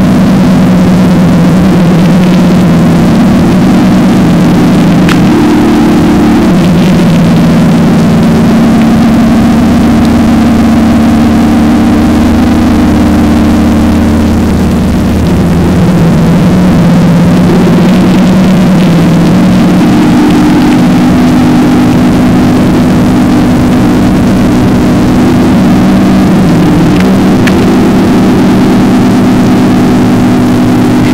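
Instrumental stretch of a sludge/doom metal song without vocals: heavily distorted electric guitar and bass holding long, low chords, loud and dense, that change every few seconds.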